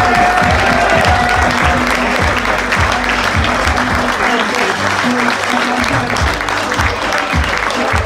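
Audience applauding continuously, with music playing underneath.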